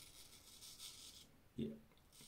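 Hollow-ground Bengal straight razor scraping through lathered stubble on the chin, a faint high rasp in a few short strokes.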